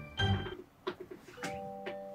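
Background music of bell-like struck notes that ring on, with new notes coming in about a second and a half in. A short louder sound comes just after the start.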